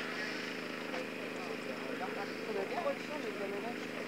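Many racing quads idling together on the start line, a steady engine drone, with faint voices over it.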